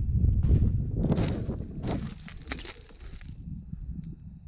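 Footsteps crunching through dry grass and brick debris, several crackly steps in the first half, over a low rumble on the microphone that fades about halfway through.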